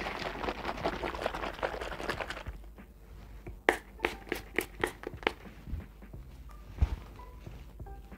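Trigger spray bottle of two-phase heat-protectant hair spray spritzed onto hair in about six quick short bursts, starting partway through. Before the spritzes there are a couple of seconds of rustling as the hair and bottle are handled.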